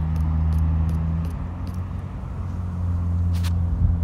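A steady low mechanical hum, like a running engine, that shifts slightly in pitch about a second in, with a brief burst of noise near the end.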